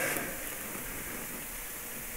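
Steady background hiss of room tone, with no other sound.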